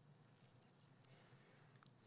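Near silence: room tone, with a few faint high ticks in the first second and one more near the end.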